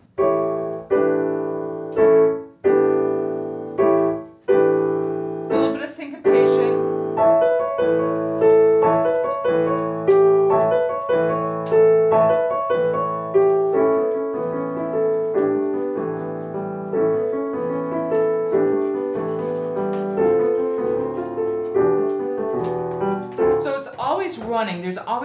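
Yamaha grand piano played: a few separate struck chords, then from about six seconds in a fluid line of notes that keeps moving.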